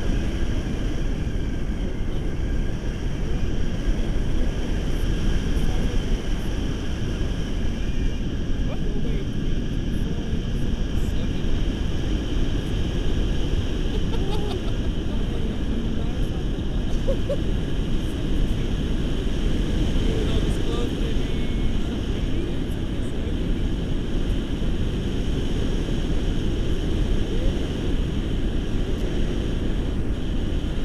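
Wind rushing over an action camera's microphone in paraglider flight: a steady, low buffeting rumble.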